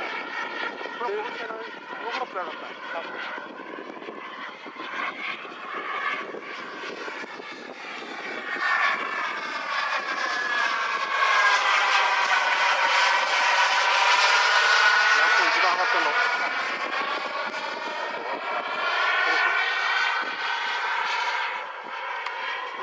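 Radio-controlled model MiG-29 jet flying past with a steady engine whine. The whine grows louder over the first half, is loudest a little past the middle, and then fades.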